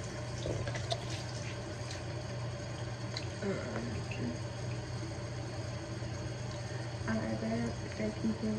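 Bathroom sink faucet running steadily into the basin.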